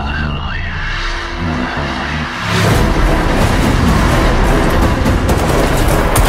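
Action film trailer soundtrack: dramatic music under sound effects, jumping suddenly much louder about two and a half seconds in to a dense, full-range mix of music, low rumble and clatter.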